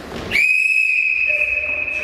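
A whistle blown in one long, steady, high-pitched blast lasting about two seconds, opening with a short upward slide in pitch.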